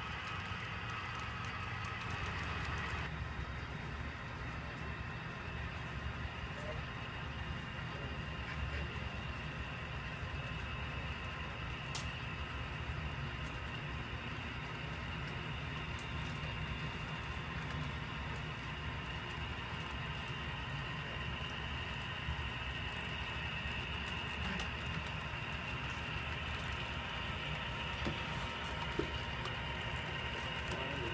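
HO scale model freight train running steadily on the layout track, a low rumble with a thin steady whine above it.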